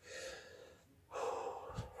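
A man's audible breathing between sentences: a short breath at the start, then a longer, louder one about a second in.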